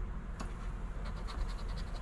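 A coin scratching the coating off a lottery scratch-off ticket. There is a single click early, then a quick run of short strokes, about six or seven a second, from about a second in.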